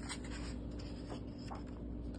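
A page of a picture book being turned by hand: paper rustling and sliding, with a few soft crinkles, over a faint steady hum.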